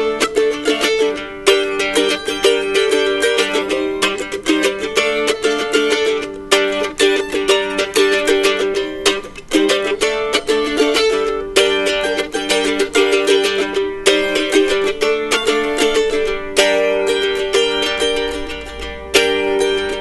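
Solo F-style mandolin, picked: the instrumental introduction of a folk song, a continuous run of quickly plucked notes and chords.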